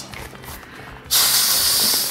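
A person blowing hard into the valve of an inflatable camping pillow: a loud rush of breath and air begins about halfway through and starts to fade near the end.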